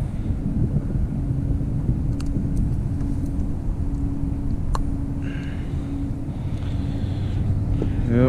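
A boat motor running steadily: a low rumble with an even hum, broken by a couple of faint clicks while a jig is worked out of a walleye's mouth.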